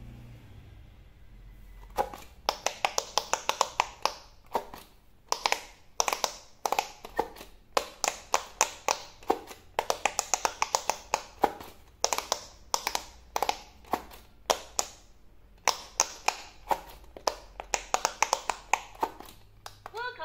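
Silicone bubbles of a handheld electronic quick-push pop-it game being pressed by thumbs, giving fast runs of sharp pops, several a second, with short pauses between runs, starting about two seconds in.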